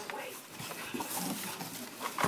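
A pug making short, irregular noises close to the microphone.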